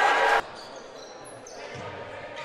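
Gym crowd noise that cuts off abruptly about half a second in, followed by quieter court sound with a basketball bouncing.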